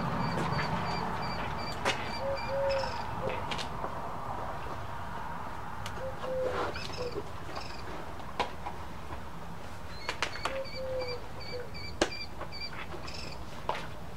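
Birds calling: one repeats a short high note about four times a second in two runs of a couple of seconds, and low sliding calls come every few seconds. A few sharp clicks and knocks come from handling a rifle and sliding it into a leather scabbard.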